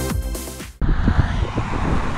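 Electronic dance-style intro music that cuts off abruptly about a second in. It gives way to outdoor street ambience: a low, uneven rumble of wind on the microphone with faint traffic.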